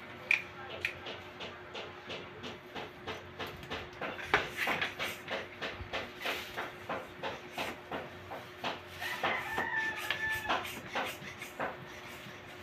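Hands handling a rubber bicycle inner tube and a plastic bag, a run of quick rustles and taps, while checking the tube for its puncture. A short squeak comes about nine seconds in, over a faint steady hum.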